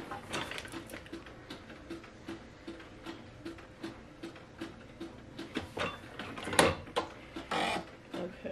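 Clamshell heat press pressing a garment to drive out moisture: faint, even ticking about two or three times a second, then a sharp clunk and a short burst of noise near the end as the handle is worked and the press opens.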